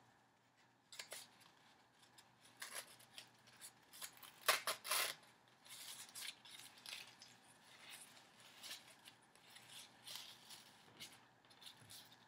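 Faint rustling and small clicks of satin ribbon being threaded through and tied onto a paper die-cut tag, with a louder rustle about four and a half seconds in.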